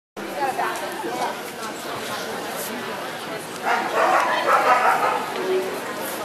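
Dogs barking amid steady crowd chatter in a large hall, louder for a second or so in the middle.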